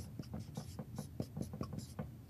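Marker writing on a whiteboard: a quick run of short pen strokes, several a second, as a word is written out.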